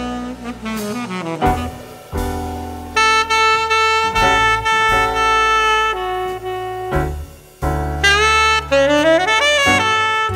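Jazz saxophone playing a line of long held notes and quick runs, with a fast rising run near the end, over a live rhythm section of piano, bass and drums.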